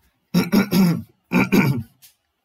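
A man laughing briefly, in two short bursts about a second apart.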